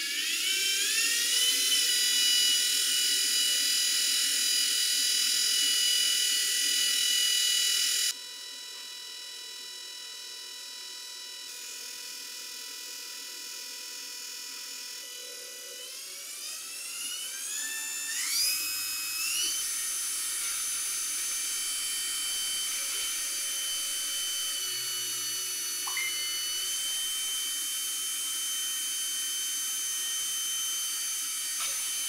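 Rewound permanent-magnet DC motor of a Ryobi S-550 sander running unloaded off a bench power supply, giving a high whine whose pitch follows the supply voltage. The pitch falls at the start as the voltage is turned down, then climbs in steps from about sixteen seconds as the voltage is raised toward 60 V. About eight seconds in, the whine suddenly gets quieter.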